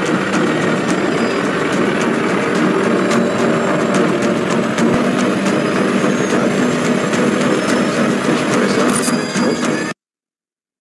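Boat engine running with a steady, loud noise and scattered crackling, as heard from on the water. It cuts off abruptly near the end.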